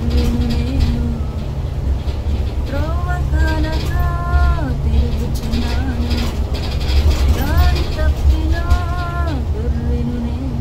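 A woman's voice humming or singing a slow melody without words, in long held notes that slide up into each note and fall away at the end. Under it runs the steady low rumble of the moving bus.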